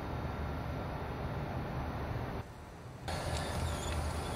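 Steady low background rumble with no distinct event. It drops away briefly about two and a half seconds in, then returns at the same level.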